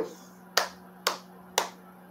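A man clapping his hands slowly: three sharp claps about half a second apart.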